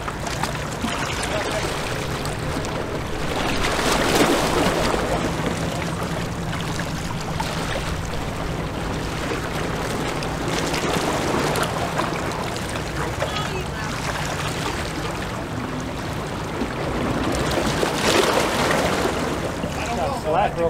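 Wind and water noise at a rocky seawall, swelling about four seconds in and again near the end, over a steady low hum.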